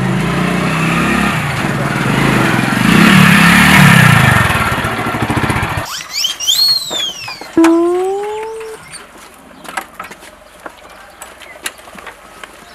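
A motorcycle engine riding up and past, getting louder to a peak a few seconds in, then cut off abruptly about halfway through. After the cut come a few quick high sweeping whistle-like tones and a longer rising tone, then light scattered clicks and knocks.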